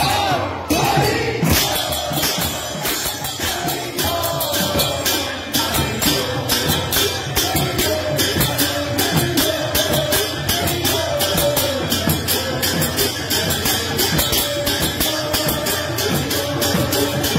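Kirtan: a group of voices singing a devotional chant, with a fast, steady beat of small hand cymbals (kartals).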